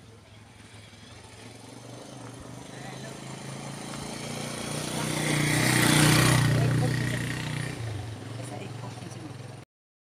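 A passing engine: a steady low hum that grows louder to a peak about six seconds in, then fades away.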